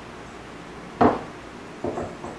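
Aluminium lure mold clacking against the metal of a triple soft-plastic injector as it is handled. One sharp clack comes about a second in and a lighter one near the end.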